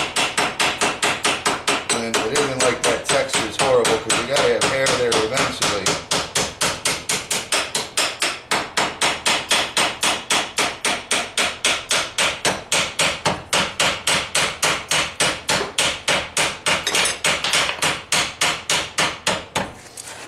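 Hand hammer striking the red-hot end of a railroad spike held in a leg vise, in rapid, even blows of about five a second.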